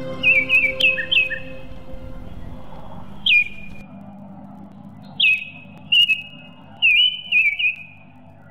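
Small bird calling: sharp chirps that slide quickly down in pitch, some trailing into a short held whistle, a quick run of them near the start and then single calls and short runs every second or so. Background music fades out during the first two seconds.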